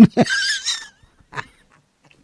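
A short, breathy, high-pitched vocal sound with a wavering, falling pitch, lasting under a second, followed by a faint short sound about a second later.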